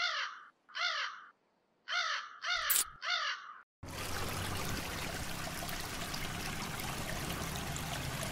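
Crows cawing, five calls in about three seconds. About four seconds in, water starts running steadily from a wall tap.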